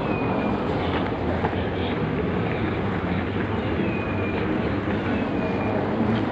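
Airport moving walkway running with a steady rumbling hum, and faint short squeaks recurring every second or two.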